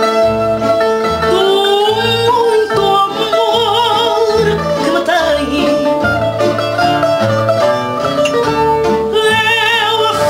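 A woman singing fado with a wide vibrato, accompanied by plucked guitars: the bright Portuguese guitar over an acoustic guitar keeping a steady bass pulse.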